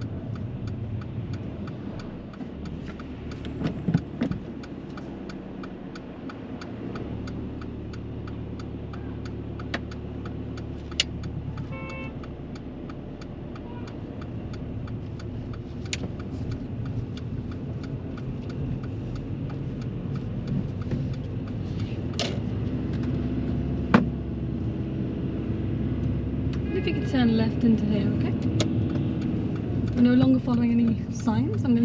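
Inside a moving car: steady engine and road noise, with the turn-signal indicator ticking evenly through the first third. The engine and road noise grow louder in the second half as the car picks up speed.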